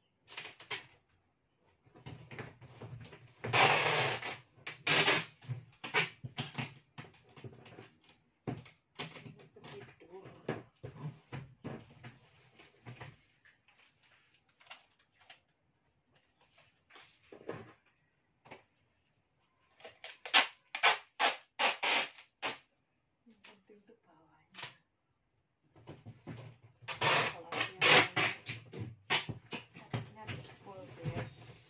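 Rustling, crinkling and knocking as items are handled and packed into a large cardboard box. The sound comes in irregular bursts, loudest three times, with quieter handling clicks between.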